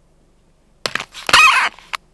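Dashcam being handled and swung round on its mount: a couple of sharp clicks about a second in, a loud scraping rub lasting about half a second, and a last click near the end.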